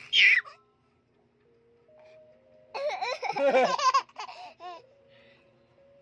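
Baby laughing: a short high-pitched squeal right at the start, then a longer burst of giggling and laughter about three seconds in.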